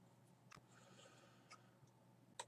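Near silence: faint room tone with two very faint clicks, about half a second and a second and a half in.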